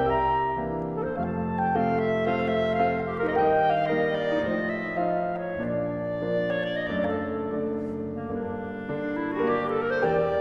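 Clarinet with piano accompaniment playing a Hungarian verbunk, a continuous flowing melodic passage with a quick upward clarinet run near the end.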